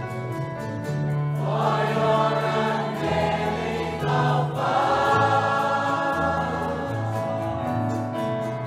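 Choir singing a worship hymn in G major over sustained instrumental accompaniment with a slow-moving bass line. The voices swell in about a second and a half in, ease off briefly around the middle, and come back.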